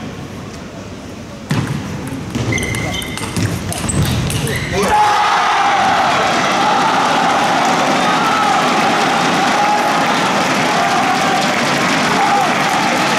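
Table tennis doubles rally: the celluloid ball clicks off bats and table in quick succession for a few seconds. About five seconds in, the point ends and the players, team benches and crowd break into sustained shouting and cheering.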